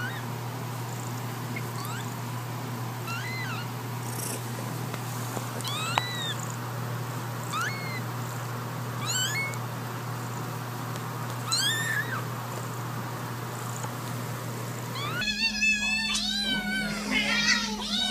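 Cat meowing: short, high mews, each rising then falling, spaced a few seconds apart over a steady low hum. Near the end the meows come louder and closer together.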